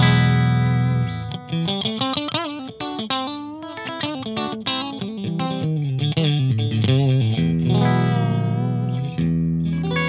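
Duesenberg Caribou semi-hollow electric guitar played through an amplifier on the bridge humbucker with the middle pickup blended in. It opens with a held chord, moves into single-note lines with wavering bends, and ends with more held chords.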